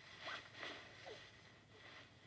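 Near silence with a few faint, brief rustles in the first half-second or so.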